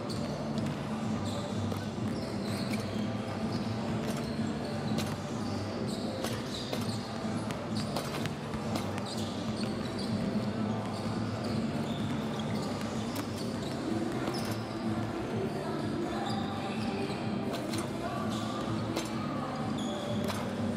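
Several basketballs bouncing on a hardwood court at once in an irregular patter, as players dribble and shoot during warm-up.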